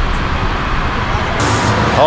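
Steady road traffic noise, a continuous rumble with a brief brighter hiss about one and a half seconds in.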